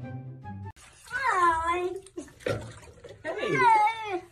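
A domestic cat giving two long, drawn-out meows with a wavering pitch, the first about a second in and the second near the end, with a short sharp knock between them. Background music cuts off just before the first meow.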